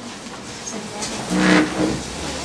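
A chair dragged across the floor as someone stands up, one loud scrape about halfway in lasting about half a second, over the shuffling of people moving about the room.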